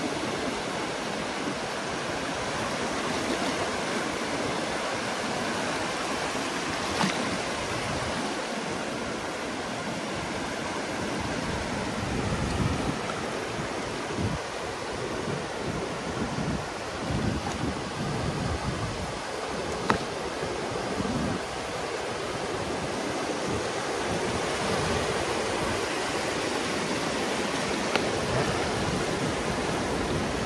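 Shallow surf washing steadily over a sandy beach, with wind buffeting the microphone at times.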